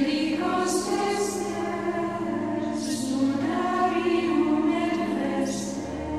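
Choral music: a choir singing long held notes.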